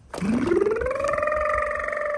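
Toy police car siren starting up: a wail that rises steeply over about a second, then holds one steady high tone.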